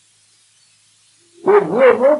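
Near silence for about a second and a half, then a man's voice starts speaking near the end.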